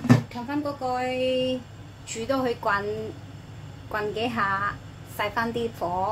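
A glass lid is set down on a stainless steel pot with a single sharp clink at the very start. After that comes a woman's voice talking in short phrases, with some drawn-out sounds.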